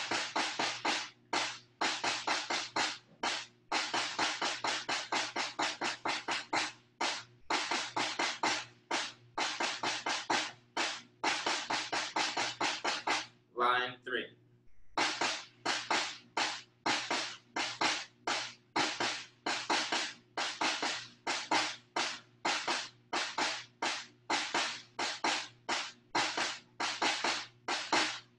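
Snare drum played with sticks in a steady run of sixteenth- and eighth-note rhythms from a drum reading exercise, a check pattern followed by an exercise line. The strokes stop briefly about 14 seconds in for a short spoken cue, then pick up again.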